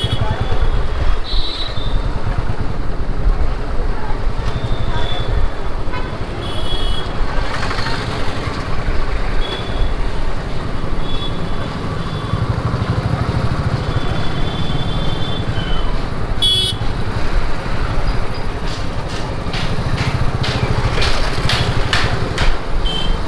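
Motorcycle engine running at low speed in dense street traffic, with short horn toots from other vehicles sounding again and again.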